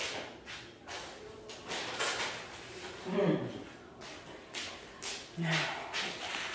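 Someone rummaging in a kitchen drawer: a series of light knocks and clacks as it is opened and things inside are moved.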